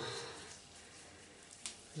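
Faint soft rubbing of hands being worked with an exfoliating hand scrub, with one sharp click about a second and a half in.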